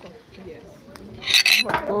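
A brief, ringing clink of cutlery against dishes about a second and a half in, followed by a voice.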